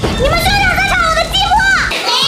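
A young woman's high-pitched wailing cry, drawn out and bending up and down in pitch, with a low rumble underneath.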